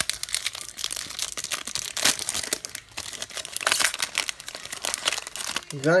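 Foil wrapper of a Pokémon TCG Primal Clash booster pack crinkling and tearing as it is ripped open by hand, a busy run of crackles that lasts almost to the end.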